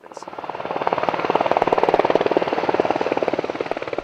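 Sikorsky UH-60 Black Hawk helicopter in flight, its four-bladed main rotor giving a rapid, even beat. The sound grows louder over the first second or two, then eases slightly.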